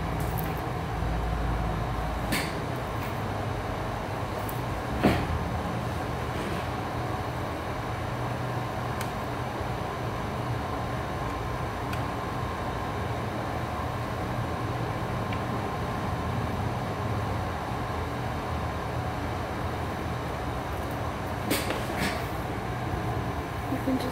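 Steady hum of a wall-mounted air conditioner running, with a few sharp clicks: one a couple of seconds in, one about five seconds in, and two close together near the end.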